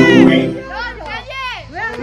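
Excited high-pitched voices whooping and shouting, their pitch swooping up and down in quick arcs, with music or a sound effect underneath, loudest at the start.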